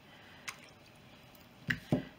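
Soft brush working a lather in a tin of saddle soap: faint wet squishing and rubbing, with a sharp click about half a second in and two knocks close together near the end.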